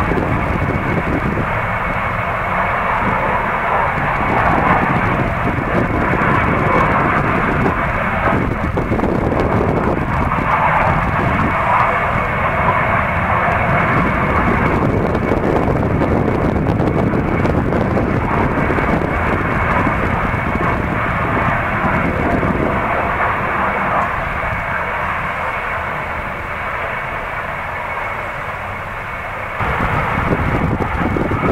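Natural gas well flare burning with a loud, steady rushing noise that swells and eases every few seconds and dips slightly near the end. A faint steady high tone runs through it.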